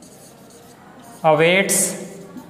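Marker pen writing on a whiteboard, a faint scratching. About a second in, a man's voice says a single short word.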